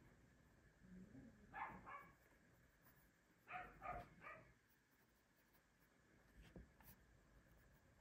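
Dogs barking faintly, a couple of short barks about a second and a half in and a quick run of three about three and a half seconds in.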